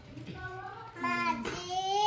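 A young child's voice in drawn-out, high, sing-song notes, starting faintly and getting louder about a second in.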